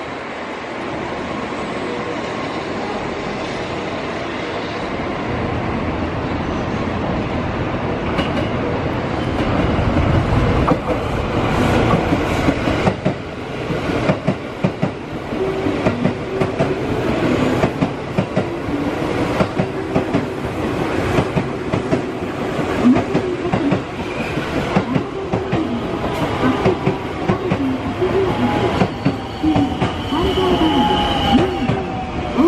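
A ten-car JR West local train, a 221 series set coupled with a 223 series set, running into the platform. Its noise builds over the first ten seconds as it approaches. The wheels then clatter rhythmically over the rail joints and points as the cars pass close by, with a falling whine near the end.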